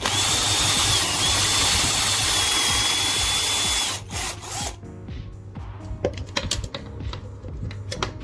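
Cordless drill boring into a wooden board: the motor runs with a steady high whine for about four seconds, its pitch dipping briefly about a second in, then stops. A short second burst follows, then scattered light clicks and knocks.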